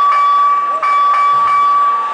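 A round-start buzzer sounding one long steady high tone, broken by a brief gap a little under a second in.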